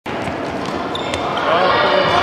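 Tennis balls being hit with rackets and bouncing on a sports hall's wooden floor, with a sharp knock about a second in, in a reverberant din. Children's high voices call out near the end.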